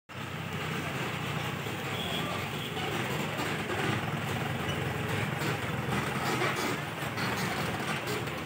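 Steady outdoor street noise: a motor vehicle's engine running, with people's voices in the background.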